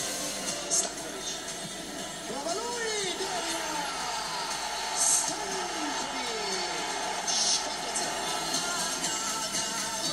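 Music with indistinct voices, coming from a television's speaker.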